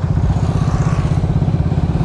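Motorcycle engine running at low road speed, heard from on the bike, as a steady, rapid, even low pulsing with some wind noise over it.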